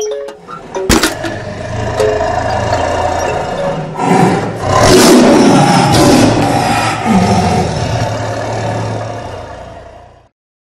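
A sudden cinematic impact hit about a second in, then a low drone under which a lion roars, loudest around the middle and trailing into a lower growl before everything fades out near the end.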